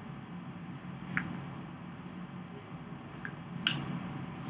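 A sheet of paper being folded in half and creased flat by hand on a tabletop: three faint short ticks and soft handling sounds, with a low steady hum underneath.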